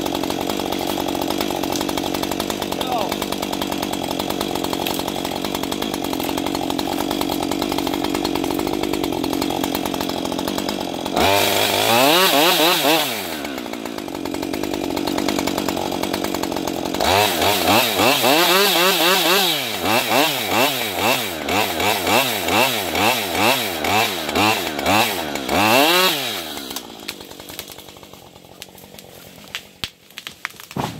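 Husqvarna 550 XPG two-stroke chainsaw cutting through a tree trunk: a steady engine note under load, a rev up and back down about eleven seconds in, then a stretch where the pitch swings up and down about twice a second before it drops away near the end. A few sharp cracks at the very end as the tree starts to go over.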